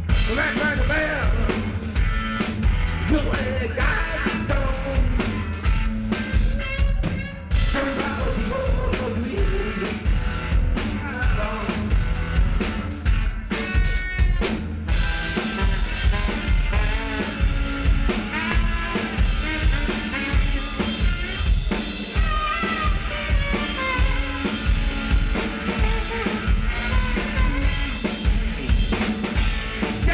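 Live band playing: drum kit keeping a steady beat under electric guitar, with a man singing and, around the middle, saxophone.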